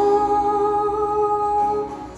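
A woman's voice holding one long wordless note, hummed or sung on a vowel, over acoustic guitar, breaking off near the end.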